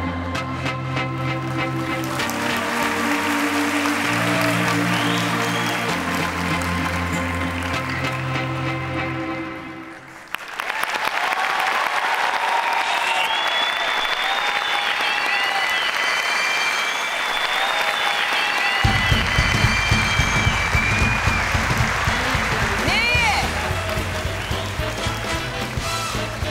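Backing music with a repeating bass line fades out about ten seconds in. A studio audience then applauds and cheers, and from about nineteen seconds a new music track with a pulsing bass plays under the applause.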